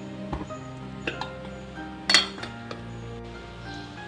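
Background music with held notes, over three metal clinks of a utensil against an aluminium cooking pot; the loudest clink comes about two seconds in and rings briefly.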